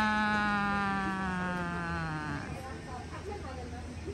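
A person's voice holding one long drawn-out note that slides slowly down in pitch and stops a little over two seconds in.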